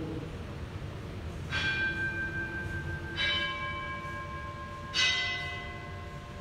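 A bell struck three times, about one and a half to two seconds apart, each strike ringing on and overlapping the next; the third strike is the loudest.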